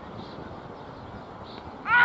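Cricket fielders and wicketkeeper shouting an appeal together near the end, several voices suddenly rising in pitch, after a stretch of faint open-air background noise.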